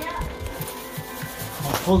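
Thin stream of tap water running into a stainless-steel sink, with a few low handling bumps.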